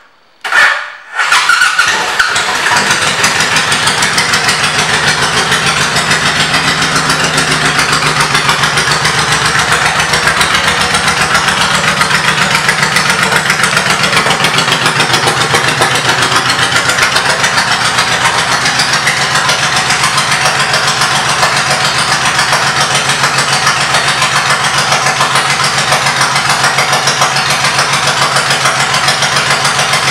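A 2002 Honda VTX1800S's big V-twin, fitted with aftermarket pipes, is started: two brief bursts, then it catches about a second in and settles into a steady, loud idle with an even exhaust beat.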